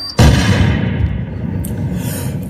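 A sudden loud bang about a fifth of a second in, its high end dying away within a second and leaving a long low rumble: a boom or gunshot-style effect cut into the dance-music mix between two songs.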